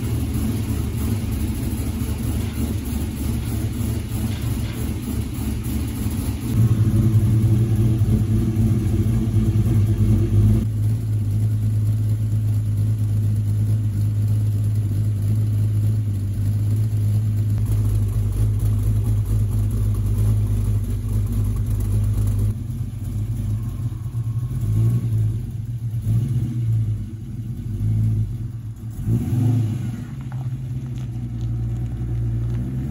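The V8 of a 1973 Camaro restomod running through a three-inch Hooker Blackheart exhaust, with a steady deep note. In the last several seconds the sound rises and falls unevenly as the car is driven.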